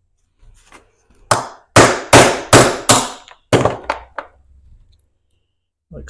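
A hammer striking a steel nail set about seven times, a couple of blows a second, starting about a second in, each hit ringing briefly: driving a ground-off rivet out of the jaw of a small pair of Vise-Grip locking pliers.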